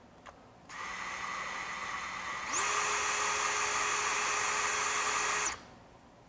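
DeWalt DCS377 Atomic 20V brushless compact band saw running unloaded with its cover open. It starts at a lower speed, then speeds up with a short rising whine about two and a half seconds in, runs steady, and cuts off suddenly near the end.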